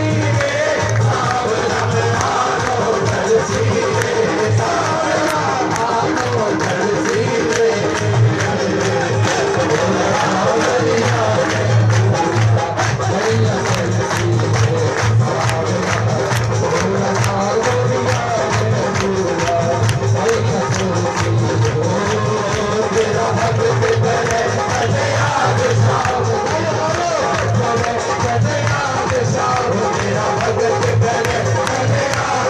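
Live Hindu devotional bhajan played loud through a PA: a man singing into a microphone over the band, with a fast, steady percussion beat.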